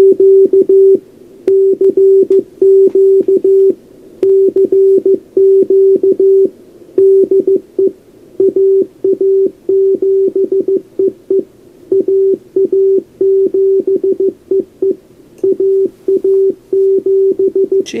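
Morse code from a homebrew SST-20 QRP CW transceiver: the rig's sidetone, a single steady tone keyed on and off in dots and dashes as its memory keyer sends a CQ, played through an external amplifier's speaker.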